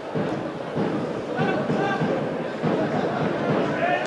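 Football crowd in the stands: many voices at once, overlapping shouts and chants with no single speaker standing out.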